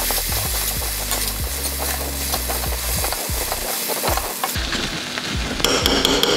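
A metal spoon stirring and scraping a vegetable stir-fry with grated coconut around a stainless steel kadai, over a steady sizzle of frying. Near the end the scraping turns sharper and quicker, with a ringing clink of spoon against the steel.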